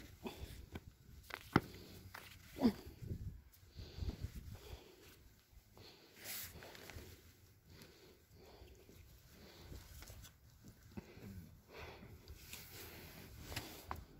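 Faint footsteps and scuffing on dry, stony dirt, with scattered small knocks and handling noises. A brief faint voice-like call comes about two and a half seconds in.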